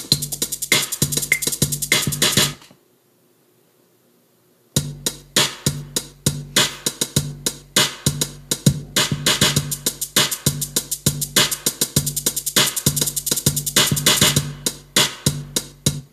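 Electronic drum-machine beat from the iMaschine app on an iPad: a fast, even run of drum hits over a steady low bass tone. It cuts off about two and a half seconds in, is silent for about two seconds, then starts again and keeps going.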